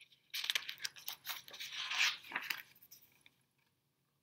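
A page of a large picture book being turned by hand, with paper rustling and crinkling for about two seconds.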